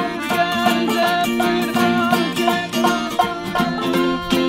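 Acoustic band playing a bouncy instrumental passage without vocals: strummed acoustic guitar and a small plucked string instrument over held accordion chords.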